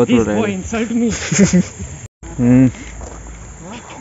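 People's voices talking close to the microphone, with crickets chirping faintly behind them. The sound cuts out for a moment about two seconds in.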